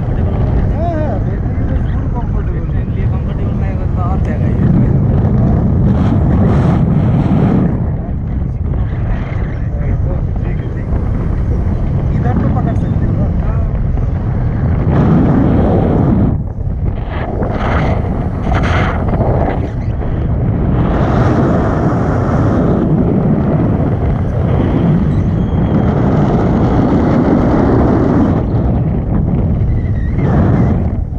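Strong wind buffeting the camera's microphone in flight under a tandem paraglider, a loud rushing noise that swells and dips in gusts, briefly dropping about eight seconds in and again about halfway through.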